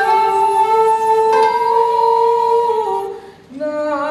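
Traditional Japanese ensemble of koto and shakuhachi playing a slow piece: long held melody notes that step in pitch, with a short break about three seconds in before a lower note comes in.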